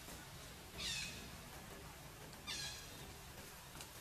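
Baby macaque giving two short, high-pitched squealing calls, one about a second in and another about two and a half seconds in, each sliding down in pitch.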